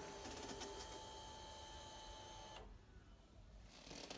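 Faint, steady electric whine from the Kawasaki ER-6n's fuel pump priming after the ignition is switched on; it runs for about two and a half seconds and then cuts off.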